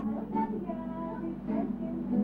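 Soft singing over an instrumental accompaniment: a wavering melody line above steady held low notes.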